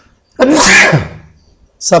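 A man sneezes once, loudly, about half a second in, a sharp hissing burst that falls away into a voiced tail; he starts talking again near the end.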